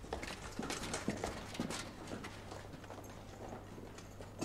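A quick, irregular run of knocks and clicks, busiest in the first two seconds, then thinning out.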